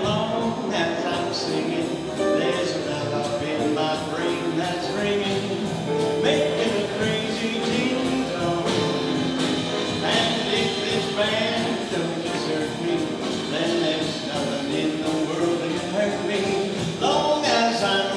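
Live jazz combo playing an instrumental introduction with a steady swing beat: piano, drum kit, upright bass and guitar.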